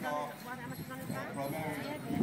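A horse's hoofbeats as it approaches a jump, with a voice talking over them.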